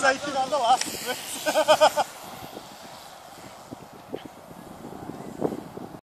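Spectators' voices shouting, with a quick run of short repeated calls near the two-second mark. After that only a faint, steady outdoor background with a few soft knocks remains.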